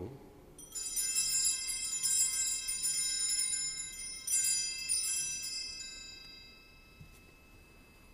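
Altar bells (Sanctus bells) rung in several shaken bursts at the elevation of the consecrated host. The bright metallic ringing fades away over the last couple of seconds.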